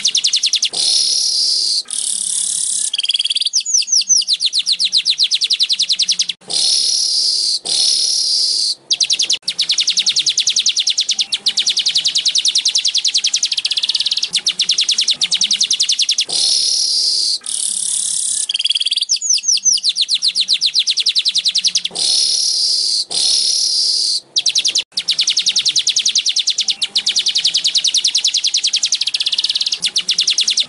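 Streaked weaver song, a rapid, buzzy, insect-like chatter of fine clicks. It is broken by short gaps and by a few quick descending whistled notes about 3–4 s in and again near 19 s. The phrase sequence repeats about every 16 seconds, as a looped tutor-song recording.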